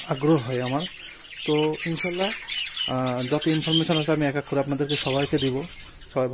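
A colony of budgerigars chirping and chattering together in many short, high calls. A person is talking over them.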